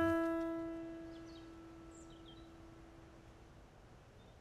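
A single piano note ringing on and slowly dying away to near silence.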